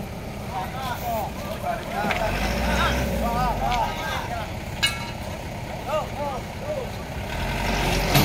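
A tow truck's engine running, with a low rumble that swells in the middle, while several onlookers' voices chatter over it. There is one sharp knock about five seconds in.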